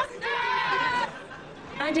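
A group of protesters shouting and chanting, ending in one long held shout about a second in.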